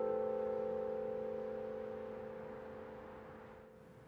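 Background score music: a held chord of steady tones left ringing after the last notes, fading steadily and dying away near the end.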